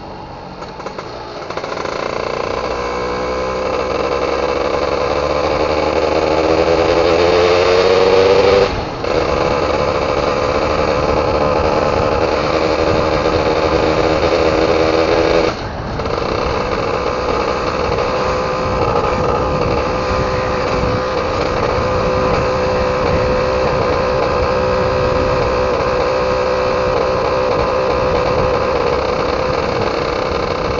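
Yamaha F1ZR 110 cc single-cylinder two-stroke motorcycle engine under way. It pulls up in pitch through the gears, with sharp drops at upshifts about nine seconds in and again near sixteen seconds, then settles into a steady cruise.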